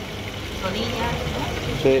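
Faint voices murmuring in the background over a steady low rumble, with a short spoken 'sí' near the end.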